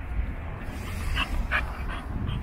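A dog panting close by, two short breaths standing out a little over a second in, over a steady low wind rumble on the microphone.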